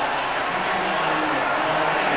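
Basketball arena crowd cheering steadily after a made basket, an even wash of noise with faint low held tones underneath.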